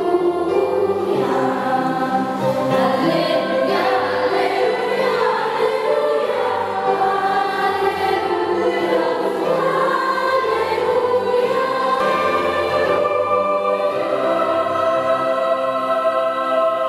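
Children's choir singing, holding long sustained notes in a slow, continuous passage.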